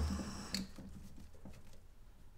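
Brief handling knocks: a low thump right at the start and a small sharp click about half a second in, then faint room tone.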